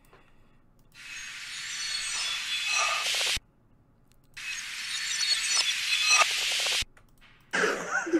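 An uplifter (riser) sound effect in a beat, played twice. Each time a hiss with glittering high tones swells louder for about two and a half seconds, then cuts off abruptly.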